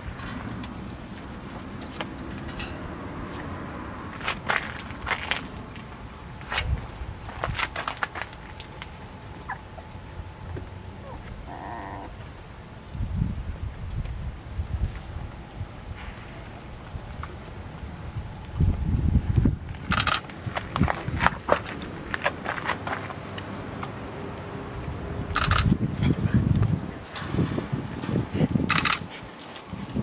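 A puppy and an adult dog moving about on concrete and gritty ground: scattered scratches, scuffs and clicks, with a brief high note about twelve seconds in and a few low rumbling bursts later on.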